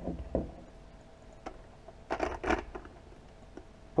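Small clicks and rubbing of a plastic GoPro clip mount being handled and fitted to a motorcycle helmet's chin bar, with a louder run of clicks and scrapes about two seconds in.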